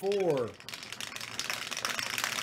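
Two dice rattling and tumbling inside a clear plastic dome dice roller, a dense continuous clatter that starts about half a second in.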